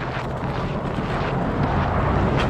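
A pickup truck's engine running steadily close by, mixed with wind on the microphone, growing slowly louder.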